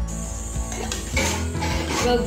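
Background music throughout. From about a third of the way in, aluminium foil crinkles and rustles as a sheet is pulled off the roll.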